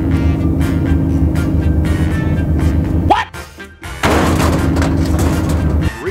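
Box truck crashing on a highway: a loud rushing, crunching noise begins about four seconds in and runs nearly to the end, over steady background music with a low drone that drops out briefly a second before.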